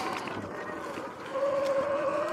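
Sur-Ron X electric dirt bike riding over grass and dirt: tyre and wind noise with the motor's whine, which grows louder about one and a half seconds in and slowly rises in pitch as the bike picks up speed.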